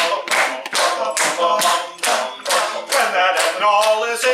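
A cappella group singing a song, with hand claps keeping a steady beat of about three a second.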